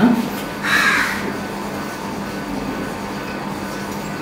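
A single harsh crow caw about a second in, over a steady low hum of room noise.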